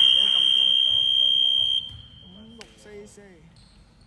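Basketball game-clock buzzer sounding one long, loud, steady high tone that cuts off about two seconds in, marking the end of the game. Faint voices of players in the hall carry on beneath and after it.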